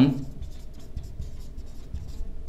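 Marker pen writing on a whiteboard: a run of small scratching strokes as words are written out.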